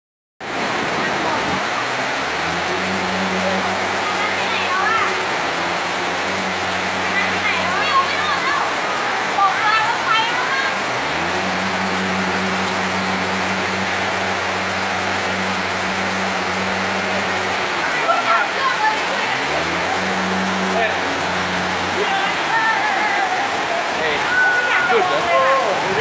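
Floodwater rushing across a street, a loud steady rush of water. A motorcycle engine hums through it in three stretches, each rising in pitch and then holding steady, as the bike pushes through the water.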